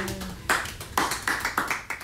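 A few hands clapping: about six separate, unevenly spaced claps, as the tail of a sung note fades out in the first moment.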